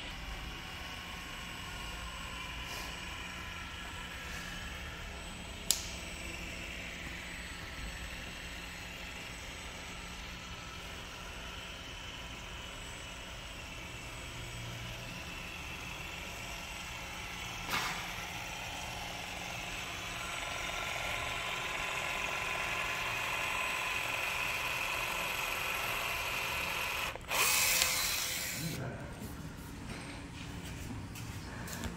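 Battery-powered caulking gun's motor whirring steadily as it pushes out a bead of urethane windshield adhesive, louder for several seconds in the second half. A sharp click about six seconds in and a short loud noise near the end.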